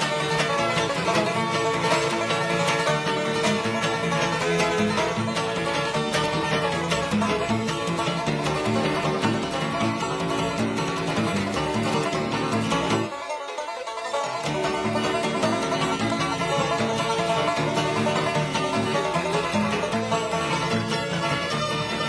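Live bluegrass band playing an instrumental: fiddle over picked strings, with slap bass underneath. About 13 seconds in, the low end drops out for a moment before the full band comes back.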